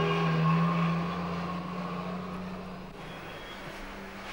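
Steady engine hum of a passing motor vehicle, loudest about half a second in and fading away over the next two seconds.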